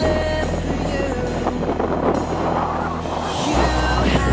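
Background music with held bass notes and a steady beat; the bass changes note at the start and again about three and a half seconds in.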